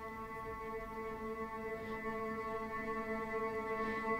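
Straylight granular synthesizer playing a held key from a sample of a violin tremolo on an open A: one steady, sustained bowed-string tone that slowly grows a little louder.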